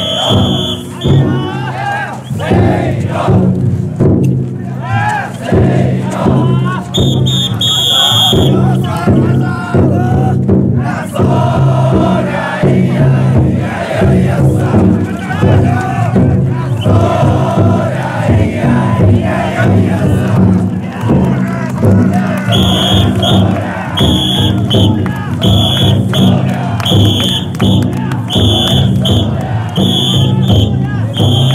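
Taikodai drum-float carriers shouting together in chorus over the steady beating of the float's big drum. A shrill whistle joins in short blasts, briefly at the start and around eight seconds in, then about once a second from about three-quarters of the way through.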